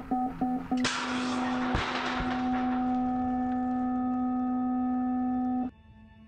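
BMX start-gate cadence: a quick run of short electronic beeps followed by one long held tone, with a burst of noise as the long tone begins, when the gate drops. The long tone cuts off suddenly near the end.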